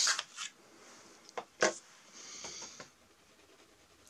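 Freshly sharpened colored pencil on sketchbook paper: two light taps, then a brief scratchy rub of the lead about two seconds in.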